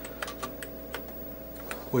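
Keystrokes on the Sol-20's keyboard: a handful of separate, unevenly spaced clicks as a short command is typed.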